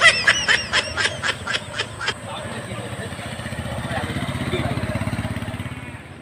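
A quick run of about a dozen short, high-pitched calls in the first two seconds. Then a motorcycle engine runs, growing louder and fading near the end.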